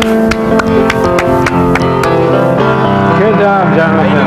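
Open grand piano being played: a quick run of struck notes ringing over held bass chords. A man laughs over it partway through.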